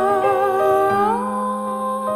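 Closing bars of a slow Greek song on piano with a wordless humming voice: the hummed line wavers with vibrato, then glides up to a long held note about a second in, over sustained piano chords.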